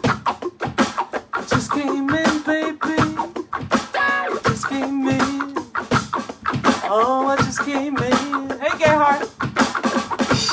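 A blues-rock song performed live: sung vocals with long held notes that waver in pitch, over electric guitar and a drum beat.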